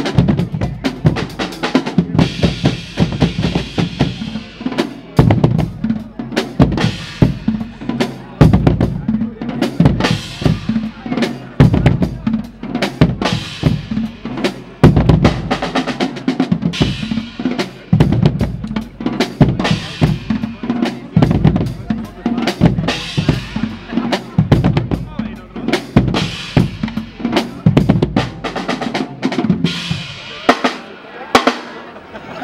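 Guggenmusik carnival band playing loud: bass drum, snare and drum kit keep up a dense, driving beat with drum rolls, under sousaphones and other brass.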